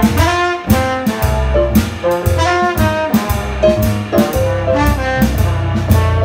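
Live blues band playing an instrumental passage: saxophone and other horns over a stage piano, bass and drum kit, with a steady beat and no singing.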